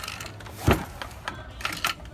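Wooden pedal loom being worked during weaving: clacks and knocks of wood against wood, the loudest a heavy thump less than a second in, with a sharper knock near the end.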